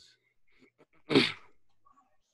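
A man's single short, breathy 'uh' about a second in, preceded by a few faint clicks.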